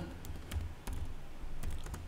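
Computer keyboard being typed on: a handful of quiet keystroke clicks at an irregular pace.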